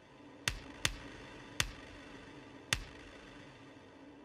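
Sparse electronic sound-design track: four sharp clicks at uneven spacing, the first two close together, over a low steady hum.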